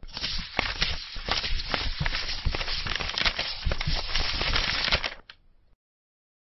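Pencil scratching and scribbling quickly on paper, a dense run of short scratchy strokes that stops abruptly a little after five seconds in.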